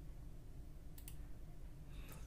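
Two faint computer mouse clicks about a second in, close together, over a low steady hum.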